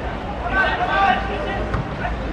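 Voices shouting across a football pitch during play, in short calls, over a steady low rumble.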